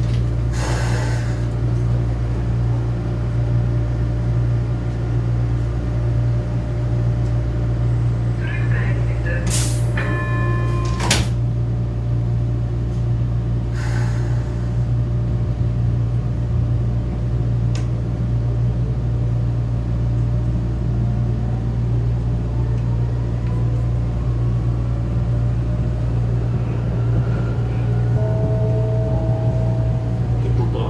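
Vienna U4 metro train heard from inside the car: a steady low hum while it stands at a station. About ten seconds in comes a brief electronic warning tone with clunks as the doors close. In the second half a rising whine builds as the train pulls away.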